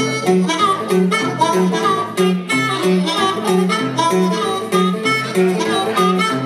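Amplified blues harmonica played cupped against a microphone, its notes bending in pitch, over a repeating guitar riff.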